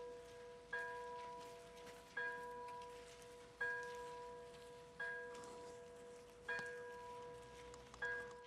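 A single bell tolling slowly and evenly, struck five times about a second and a half apart, each stroke ringing on and fading before the next.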